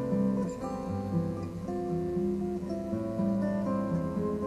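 Background music: acoustic guitar playing held and strummed notes.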